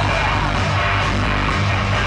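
Live rock band playing loud with a heavy, steady low bass. This is an instrumental stretch with no vocals, captured by a handheld camera in the crowd.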